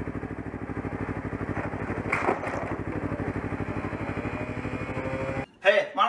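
A vehicle engine idling steadily with an even, fast pulsing beat. It cuts off suddenly about five and a half seconds in, and a man starts speaking.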